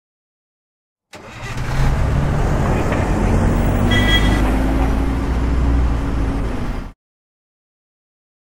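Vehicle engine sound effect: an engine running and revving, its pitch rising slowly. It starts about a second in and cuts off abruptly about a second before the end.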